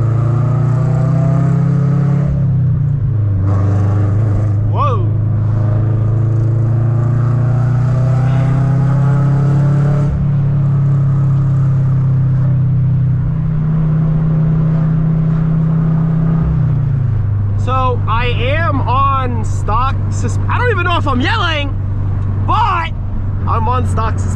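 Scion FR-S's flat-four engine droning inside the cabin while driving, its pitch stepping up and down with speed and dropping to a lower drone about two-thirds of the way through. Near the end a person's voice, sliding up and down in pitch, comes in over it.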